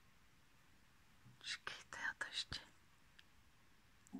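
A few breathy whispered syllables from a woman, about a second and a half in, with a small sharp click among them.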